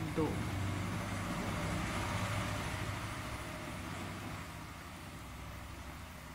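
A woman's voice says one word, then a low rumble of background noise builds to a peak about two seconds in and slowly fades away.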